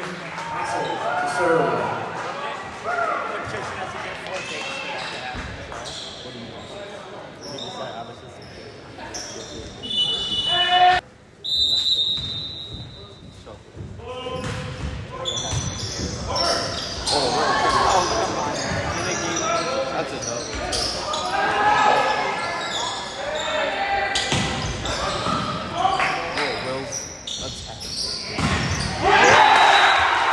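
Volleyball rally in a gymnasium: the ball is struck sharply again and again amid players' and spectators' shouts and chatter in an echoing hall. Near the end the spectators break into loud cheering as the point is won.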